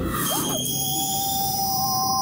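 Film sound effect of a loud ringing in the head: several steady high-pitched tones held together, coming in about half a second in, standing for the very loud buzzing a character feels in her head.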